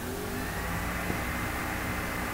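Steady low background hum and hiss with a faint thin high whine, unchanging throughout.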